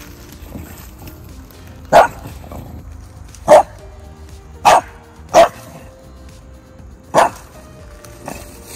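A dog barking five times in single sharp barks, spaced one to two seconds apart.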